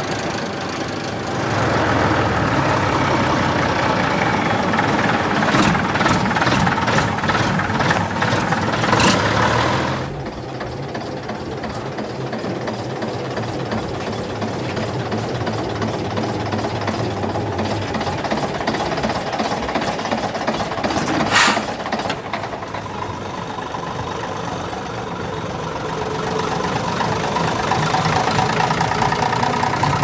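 Heavy vintage AEC diesel engines running: a green army lorry's engine, loud and pulling from about a second and a half in, then quieter idling after about ten seconds from an AEC RT double-decker bus, with one sharp knock midway. Near the end an engine grows louder as a coach passes close.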